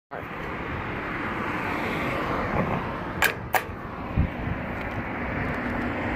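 Road traffic passing on a busy street, a steady rush that builds slowly. Two sharp clicks come a little past the middle, a third of a second apart, with a low thump just after.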